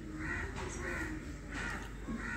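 Crows cawing faintly, a few short caws in a row.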